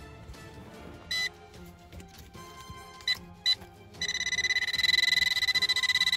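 Handheld metal-detector pinpointer probing loose soil in a dig hole. It gives a few short high beeps, then from about two-thirds of the way in a loud, fast-pulsing continuous beep, the signal that it is right on top of a metal target.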